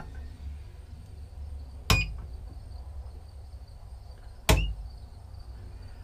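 Two sharp clicks about two and a half seconds apart, each with a brief high beep: the remote switch of a Cen-Tech power inverter being toggled, and the inverter beeping in answer.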